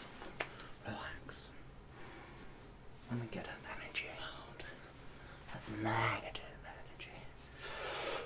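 A man whispering close to the microphone in breathy, unintelligible bursts, with a sharp click just after the start.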